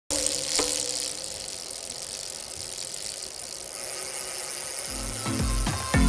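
A hissing noise that starts suddenly and fades over the first second or two, then intro music with deep bass notes and a beat starts about five seconds in and grows louder.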